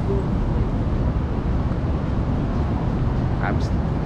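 Downtown city street traffic: a steady, loud low rumble with no distinct events.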